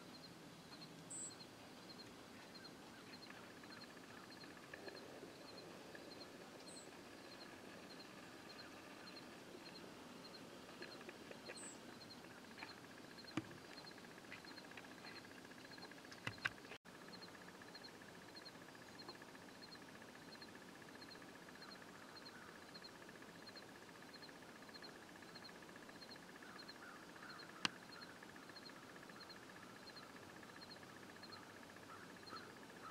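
Near silence: faint outdoor ambience, with three short, high bird chirps spread over the first twelve seconds and a few soft clicks, the sharpest one near the end.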